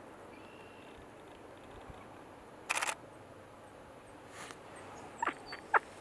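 A camera shutter firing a rapid burst of frames, a quarter-second run of clicks about three seconds in, over faint outdoor background. A few separate sharp clicks follow near the end.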